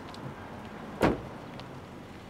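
The driver's door of a Lexus RX 400h SUV is shut once, a single solid impact about a second in.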